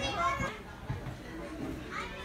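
Indistinct background voices, clearest in the first half second, over a low rumble.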